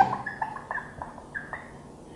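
Marker pen squeaking on a whiteboard while writing: a series of short, high squeaks and light ticks as each letter is drawn.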